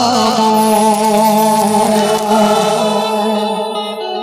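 Live Baul devotional folk song: a singer holds one long, slightly wavering note over the band's accompaniment. The note thins out near the end.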